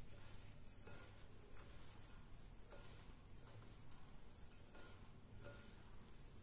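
Faint rustling of a hand mixing roasted fennel seeds, sesame, supari and sticky gulkand in a glass bowl. Light irregular ticks come from the seeds against the glass.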